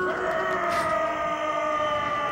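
Studio logo music: several sustained tones slide up together at the start and then hold as one steady chord.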